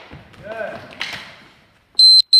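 Practice longswords striking in sparring: a single sharp knock about a second in that trails off in the echo of the gym, with a short voice sound just before it.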